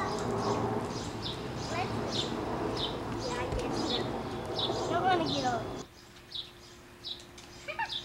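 A small bird chirping over and over, one short high chirp roughly every half to three-quarters of a second, over faint voices and a steady background noise that drops away suddenly about six seconds in.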